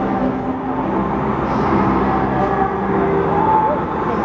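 Live piano ballad with a sung vocal, heard through outdoor concert speakers from within the crowd, under a steady wash of crowd noise and low rumble.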